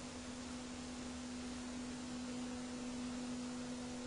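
A faint, steady hum at one pitch over a light hiss, with a fainter, higher tone joining a little past halfway.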